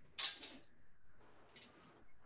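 Movement noise from a person drilling longsword cuts and footwork: one short, sharp rush of noise a moment in, then a fainter brief one near the end.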